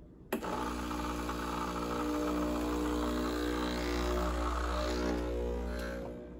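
The Breville Barista Express espresso machine's vibratory pump starts abruptly and buzzes steadily as its automatic cleaning cycle begins.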